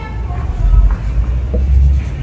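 A low rumble that swells about half a second in and is the loudest sound, with a brief tap of a marker on a whiteboard near the end.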